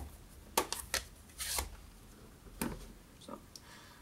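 A few light clicks and taps of a plastic ink pad case and a clear acrylic stamp block being handled on a table, with a brief rustle about a second and a half in.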